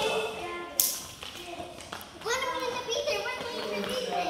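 Young children's high voices calling out and chattering, with one sharp tap about three quarters of a second in.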